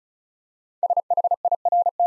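Morse code sent as a single-pitched tone at 35 words per minute, spelling the word SHIRT in rapid dits with a dah in the R and a closing dah for the T, starting about a second in.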